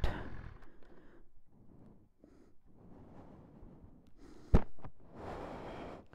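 A man's faint breathing and sighs, with no engine heard. There is a single sharp knock about four and a half seconds in, and a longer rush of breath near the end.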